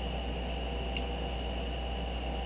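Steady low electrical hum with a thin high whine and hiss: the background noise of the recording microphone in a small room. One faint click about halfway.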